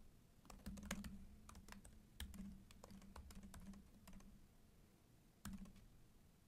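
Faint typing on a computer keyboard: irregular, closely spaced key clicks, over a faint low steady hum.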